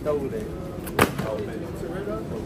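A plastic tray of minced lamb put down into a wire shopping trolley: one sharp knock about a second in. Voices in the background.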